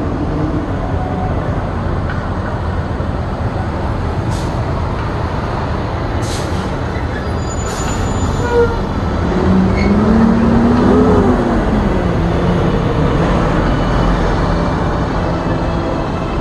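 Heavy street traffic with semi trucks running close by: a steady loud rumble, a few short hisses in the first half, and an engine tone that swells, rising and falling, about ten seconds in.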